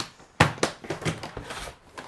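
A hard-shell guitar case being handled and moved off a desk: one sharp knock about half a second in, then a run of lighter clicks and bumps.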